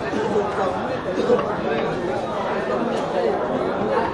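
Several people talking at once: steady, overlapping chatter of voices.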